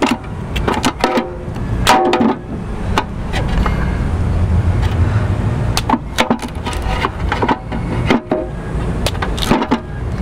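Knife cutting into a prickly pear cactus pad held in tongs: a scattered series of sharp, crisp clicks and cracks, over a steady low rumble.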